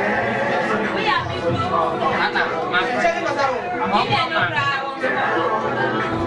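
Several people talking and calling out over one another at once, a steady party chatter with no single clear voice.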